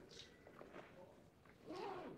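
Near silence in a pause in a man's talk into a handheld microphone, with a faint short hiss soon after the start and another just before the end.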